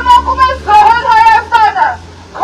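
A woman's loud, high-pitched voice shouting a protest slogan in two phrases, the second one longer.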